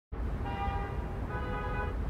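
Low steady background rumble with two short, steady pitched tones, the first about half a second in and the second just past a second.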